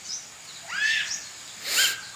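Two short bird calls about a second apart: the first rises in pitch, the second is brief and hissy. A faint steady high insect hum sounds underneath.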